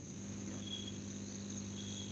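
Faint background: a steady low hum under a thin, steady high-pitched trill, with two brief high chirps.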